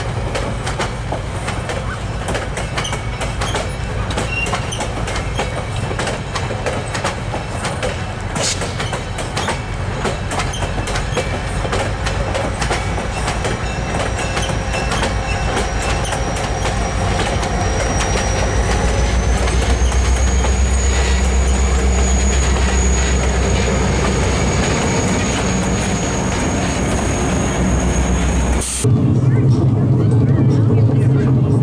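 Passenger train rolling slowly past, wheels clicking steadily over the rail joints with a thin high wheel squeal. The trailing EMD GP30 diesel locomotive's engine rumble grows louder as it passes in the second half.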